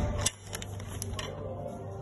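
A few light clicks and taps in the first second or so, the sharpest near the start, over a low steady hum.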